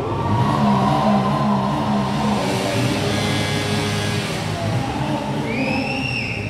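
Bajaj Pulsar motorcycle engines running steadily at the starting line, with music playing. A short high tone rises and falls near the end.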